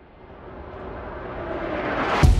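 A Vir2 Phoenix riser sound effect: a rushing noise swell that grows steadily louder and brighter, building toward a hit.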